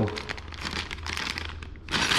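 A clear plastic bag of small mount parts crinkling as it is squeezed and turned in the hands, a run of quick crackles with a louder crinkle near the end.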